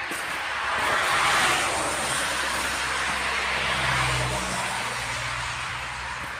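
A standing Konstal 805Na tram's equipment hums low and steady, under a rushing noise that swells about a second in and then holds.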